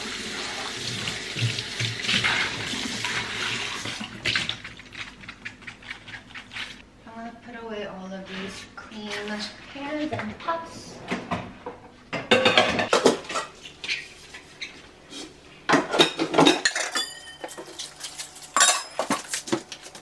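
Tap water running into a kitchen sink while a frying pan is washed, stopping about four seconds in. Then the clatter and knocks of pans and dishes being handled and put away, with the loudest bangs near the middle and end.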